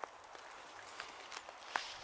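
A few soft footsteps on a path of thin snow and fallen leaves, irregularly spaced, over faint outdoor background.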